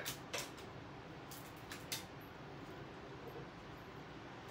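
A few faint, light clicks and taps in the first two seconds over a low, steady room hiss, with only the hiss after that.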